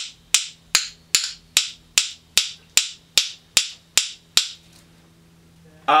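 Drumsticks clicking in a steady even pulse, about two and a half sharp clicks a second and roughly a dozen in all, stopping a little past four seconds in. He is playing them as a click sample, a home-made metronome click for the band to record to.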